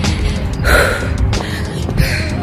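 Heavy, out-of-breath breathing from an exhausted runner, with one loud gasping breath a little under a second in. A steady low rumble of wind and handling on the handheld microphone runs under it.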